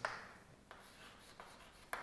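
Chalk writing on a blackboard: faint scratching with a few short taps as strokes are made, the sharpest tap near the end.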